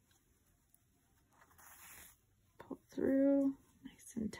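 A breath, then a short held voiced sound like a hummed "mmm" about three seconds in; the handling of the needle and yarn is barely heard.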